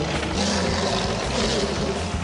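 Loud, steady, noisy mechanical sound effect for the robotic White Tigerzord in action, with an engine-like low rumble.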